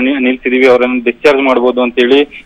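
Speech only: a news narrator talking steadily in Kannada.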